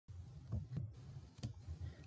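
A few faint, scattered clicks over a low steady hum.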